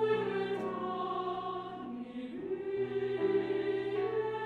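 Women's choir singing sustained chords with grand piano accompaniment, the harmony moving to a new chord a little over two seconds in.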